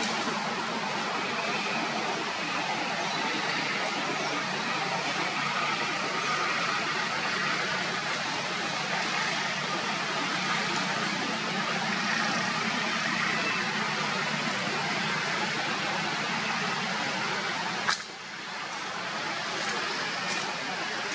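Steady outdoor background noise, an even hiss, with a single sharp click near the end, after which the noise briefly drops.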